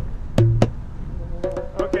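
Djembe played by hand: a deep low stroke about half a second in, then a few quick sharp slaps near the end.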